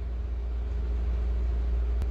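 A steady low rumble with a faint constant hum, unchanging throughout.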